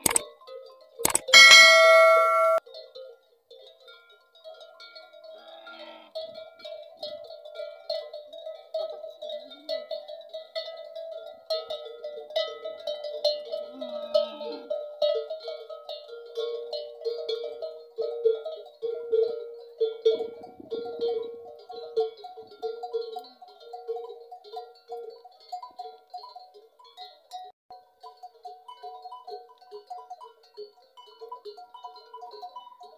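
Bells clanking and jingling irregularly at a few fixed pitches as a herd of camels walks, after a bright, loud chime about a second in.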